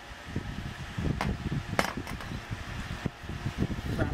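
Hands handling cardboard boxes on a wooden tabletop: rustling and scraping, with two sharp knocks about a second in and just before the two-second mark.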